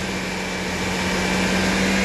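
Ford Windstar's 3.8-litre V6 engine running steadily at a raised speed of about 2,000 rpm while it runs on a pressurized injector-cleaner canister, a steady hum that grows slightly louder.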